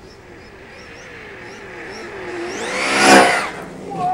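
Traxxas Slash 4x4 brushless RC truck at top speed on a 3S LiPo, its motor and on-board-audio engine sound growing louder as it approaches, passing close by about three seconds in, with the pitch dropping as it goes past.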